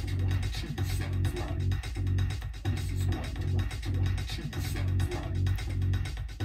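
Electronic beat playing back from an Akai Force, with a heavy bass line under a steady drum pattern.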